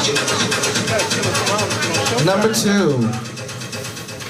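Audience voices talking over one another and calling out. The crowd noise drops off about three seconds in.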